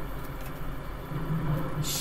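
A steady low background hum with no distinct events.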